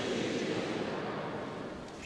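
Murmur and rustle of a congregation in a large, reverberant church, fading steadily toward quiet.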